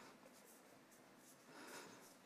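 Near silence: room tone, with a faint brief noise near the end.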